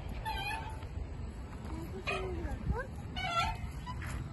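Squeaky metal swing hangers or chains creaking in short, meow-like squeals that come back every second and a half or so as the swings go back and forth, over low wind rumble on the microphone.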